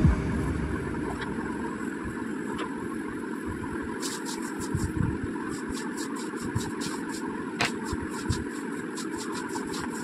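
Steady low background rumble, with soft scratchy strokes of a hand blending pencil shading on paper that come in quick runs from about four seconds in.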